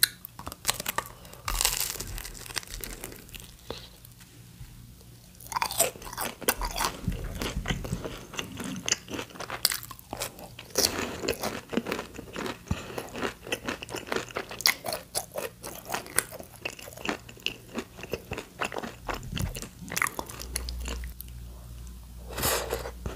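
Close-miked biting and chewing of crisp, breaded Korean fried food (twigim) in the mouth: dense, irregular crunches and crackles. There is a quieter spell a few seconds in, then the crunching picks up again.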